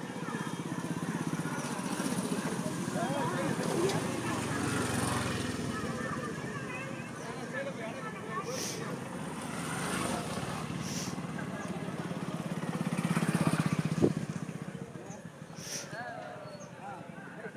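Motorcycle engines running at low revs as bikes ride slowly past, one growing louder as it comes close about three-quarters of the way through, then fading.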